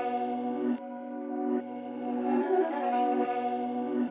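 Background music: sustained, effect-laden chords that change about every second.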